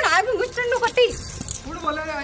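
A woman's high voice calling out in drawn-out tones, broken about a second in by a brief metallic jingling.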